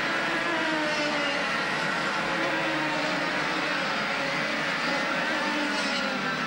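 Several two-stroke racing kart engines running at high revs as a pack of karts races past, a blend of engine notes rising and falling in pitch as they change speed through the corners.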